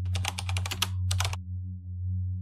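Typing sound effect: a quick run of keystroke clicks, then a shorter run after a brief pause, over a low steady drone.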